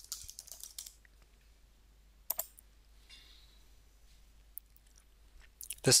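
Keystrokes on a computer keyboard: a quick run of typing in the first second, then a single sharper click a little over two seconds in.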